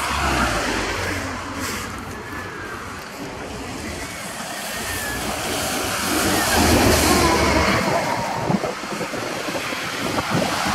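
Road traffic passing close by on a wet street: a car goes past at the start, then a city bus passes about six to eight seconds in, the loudest moment, its engine rumble and tyre noise swelling and fading.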